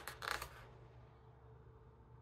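A page of a large book turned by hand: a brief paper rustle and swish in the first half second.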